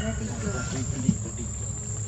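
Insects in dense tropical vegetation sounding a steady high-pitched drone, with faint voices underneath.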